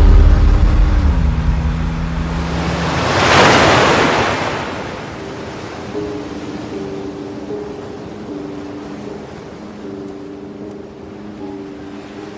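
Film soundtrack: a low, loud score note that slides down and fades in the first two seconds, then a surge of rushing surf noise peaking about three and a half seconds in. After that, soft held music notes sound over a faint steady wash of sea waves.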